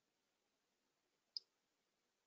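Near silence, broken by a single short, high click a little after one second in.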